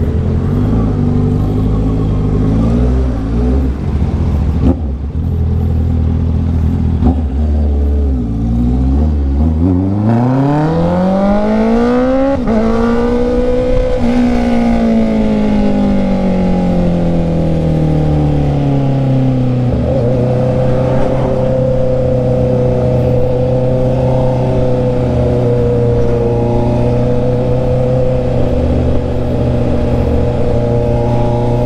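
Honda CB650R's inline-four engine heard from the rider's seat under way. It runs low for the first several seconds, revs up under acceleration from about nine seconds in, eases off, then holds a steady cruise for the last ten seconds.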